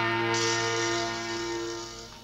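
A sustained dramatic chord from a film score, held on one set of notes, gaining a brighter edge about a third of a second in and fading away near the end.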